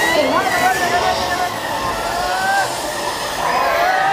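Dark-ride show audio: voices with wavering, gliding pitch and no clear words, over a steady background of ride noise.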